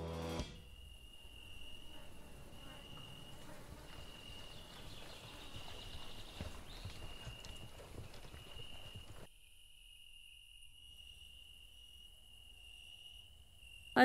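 A horse walking on grass and dirt, faint hoofbeats, over a steady high-pitched insect drone that pulses on and off. A music cue ends about half a second in, and the lower background noise drops away about nine seconds in while the insects carry on.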